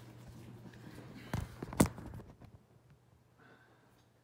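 Two short knocks about half a second apart, a little over a second in, over a faint low hum; after that the sound drops away to near silence.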